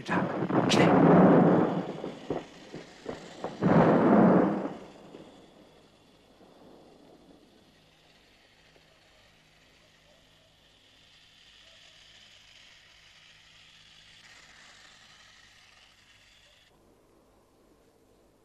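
Two loud explosions about four seconds apart, the first just after a couple of sharp cracks, each dying away within a second or two; then only a faint hiss.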